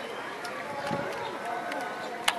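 Background chatter of several people talking at once, with a few faint clicks.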